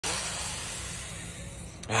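A man drawing a long, deep breath in, heard as a steady hiss. Near the end it turns into an audible sigh as he breathes out.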